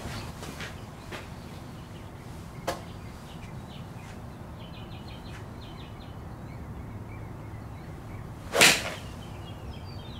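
A golf iron swung at a ball off a range mat: one quick swish and strike, the loudest sound, about a second before the end.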